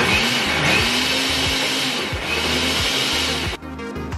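Electric mixer grinder running, wet-grinding soaked millet and lentils into batter. The motor starts suddenly, rising in pitch as it spins up, and cuts off about three and a half seconds in.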